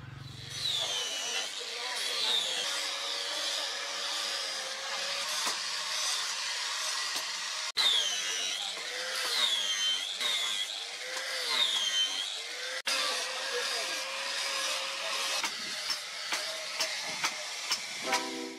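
A power grinder working over the quenched leaf-spring steel machete blade. Its whine dips in pitch each time it bears on the steel and rises again, over a steady grinding hiss.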